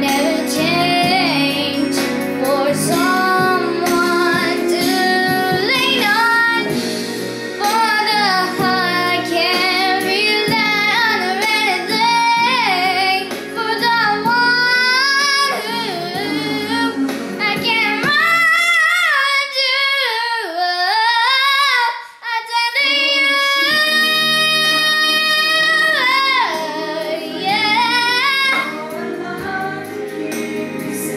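An eight-year-old girl singing a slow pop ballad over a backing accompaniment, her melody sliding and holding long notes. From about 18 s to 23 s the accompaniment drops away and she sings nearly alone, with a brief break near 22 s before the backing returns.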